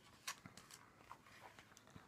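Near silence: room tone with a few faint ticks and rustles from a hardback picture book being handled in the hands.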